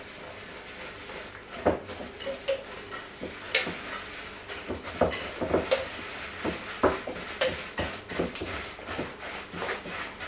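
Wire whisk stirring melted butter and sugar in a glass mixing bowl, the wires clinking and scraping against the glass in irregular strokes that start after a short quiet opening.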